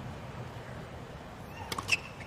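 Hushed tennis stadium ambience, then near the end a few short ticks and a sharp racket-on-ball hit of the serve.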